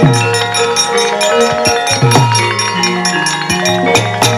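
Javanese gamelan ensemble playing: bronze metallophones ring sustained notes over low drum strokes that drop in pitch, with frequent sharp metallic clicks on top.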